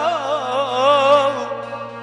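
A man singing a Turkish folk song in a long, wavering, ornamented vocal line, accompanying himself on a bağlama; the voice tails off near the end.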